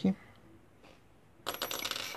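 A small metal tool clinking and rattling against the tabletop, starting about one and a half seconds in.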